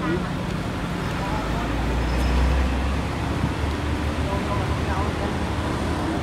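Outdoor background noise with indistinct distant voices and a steady traffic-like hum. A low rumble swells for a second or so about two seconds in.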